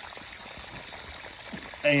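Steady splashing and trickling of water spraying from the fittings of a PVC pipe feeding small micro-hydro water turbines and falling into a shallow creek. A man's voice starts near the end.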